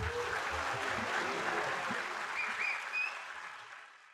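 Audience applauding at the end of a live big-band number, with a brief faint whistle about two and a half seconds in; the applause fades out to silence near the end.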